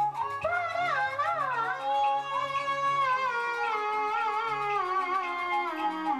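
Traditional Chinese funeral wind music: a high wind instrument plays a melody that slides and wavers in pitch, over lower held notes that change in steps.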